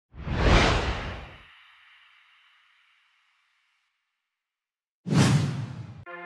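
Two whoosh sound effects. The first swells and dies away within about a second and a half, leaving a faint ringing tail that fades out by about three seconds in. After a gap, a second whoosh comes about five seconds in.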